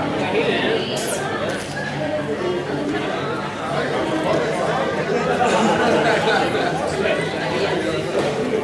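Indistinct background chatter of many people talking at once in a large room, steady throughout.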